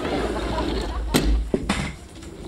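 Audience laughter trailing off over a low room rumble, then two sharp clicks about half a second apart as a coin-operated dryer's door is pulled open.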